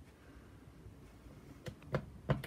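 Quiet handling of craft materials, then two small sharp plastic clicks near the end as the snap-on lid of a Ranger Archival Ink pad is opened.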